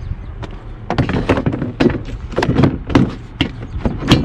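Hard plastic Milwaukee Packout cooler knocking and clicking against the Packout mounting plate as it is set down and snapped into place: a run of short, irregular clunks and taps.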